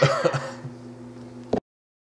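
A man's short, wordless vocal sound over a steady low hum, then a click as the audio cuts off to dead silence about one and a half seconds in.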